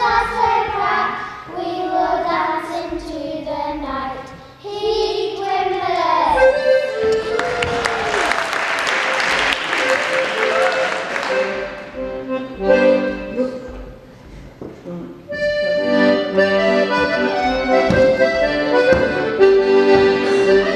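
Children's voices chanting together in rhythm, then a few seconds of loud, noisy sound. After a few scattered notes, a piano accordion starts a dance tune and plays on steadily near the end.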